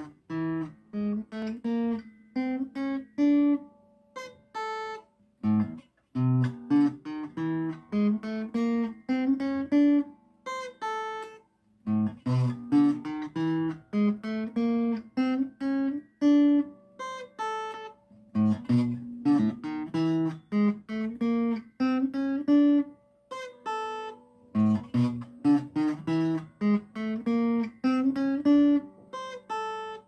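Solid-body electric guitar picked one note at a time, practising a chromatic lick: short phrases of stepping notes, played over and over with brief pauses between them.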